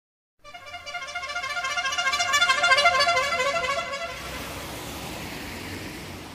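A long horn blast with a fluttering tone that swells for about three seconds, then dies away into a steady hiss.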